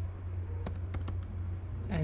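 Computer keyboard keys tapped a few separate times while typing code, over a steady low electrical hum.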